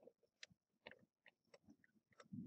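Near silence, broken by a few faint, irregular ticks and clicks.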